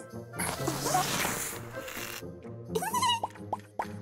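Cartoon sound effects over background music: a rushing, whooshing noise for about two seconds, then a short rising, squeaky glide near the end.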